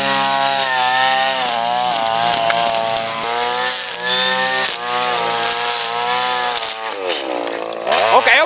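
Gas string trimmer's small engine running at high revs, its pitch dipping briefly a few times. Near the end it falls in pitch, then climbs back up.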